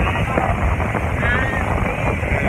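Steady noise of a motorboat running at speed, with wind buffeting the microphone.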